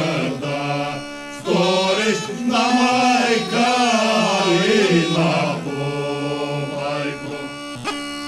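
Bulgarian folk song sung by a group of voices, long bending melodic phrases over a steady held low drone.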